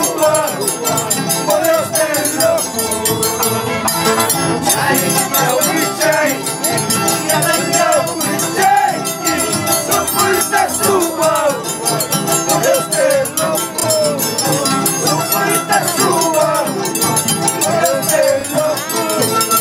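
Andean harps and violins playing a huayno, with a steady high metallic clinking keeping the beat, from the scissors dancers' tijeras (paired iron blades).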